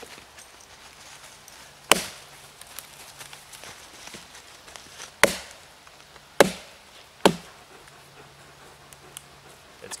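A Gransfors Bruks Outdoor Axe chopping down into a short piece of wood to split it. There are four sharp chops: the first about two seconds in, then three more closer together later on. By the last blow the piece is split through, needing only a little pry.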